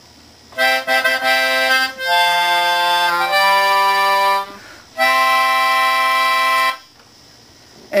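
Melodihorn, a small keyboard free-reed instrument blown through a long tube, played with both hands with a reedy, accordion-like tone. A quick run of notes starts about half a second in, then chords follow, and a last held chord stops about seven seconds in.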